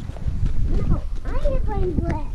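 A young child's high voice, vocalising without clear words in sliding up-and-down tones, over a loud low rumble of wind and handling on the microphone.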